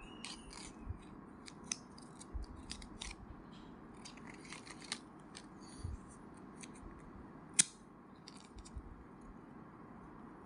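Small paper picture cards handled and bent in a toddler's hands: a string of short crinkly rustles, with one sharp click about three-quarters of the way through.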